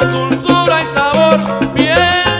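Salsa music with a steady beat over a low bass line.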